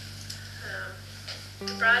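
Faint rustling and a few light clicks of objects being handled, over a low steady hum; a voice says "um" near the end.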